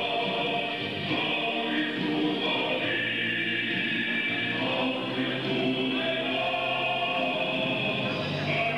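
A choir singing in long, held notes.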